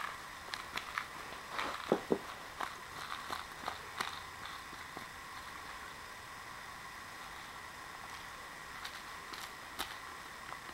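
A cat's rattle toy rat clicking and rattling irregularly as the cat grabs, bites and kicks it on carpet, with soft scuffing; the clicks are busiest in the first four seconds, then it goes mostly still until a few clicks near the end.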